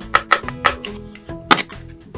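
Background music with a few sharp, irregularly spaced plastic clicks and taps as the lid of a small plastic toy barrel is handled and pulled off; the loudest click comes about one and a half seconds in.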